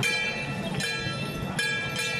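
Metal percussion struck in a steady beat, about once every 0.8 s, each stroke ringing on with bright metallic tones over a low rumbling background. This is the kind of accompaniment played for a Ba Jia Jiang troupe's procession dance.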